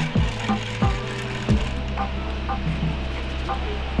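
Background music with a deep, steady bass and three falling bass sweeps in the first second and a half.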